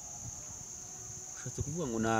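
Crickets trilling in one steady, high-pitched drone. A man's voice begins speaking near the end.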